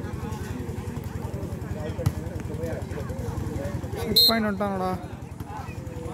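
Players and spectators talking and calling out across an outdoor volleyball court, over a steady low motor drone. A single sharp knock comes about two seconds in, and a loud shout rings out about four seconds in.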